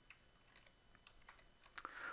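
Faint typing on a computer keyboard: a quick run of light key clicks as a short word is entered.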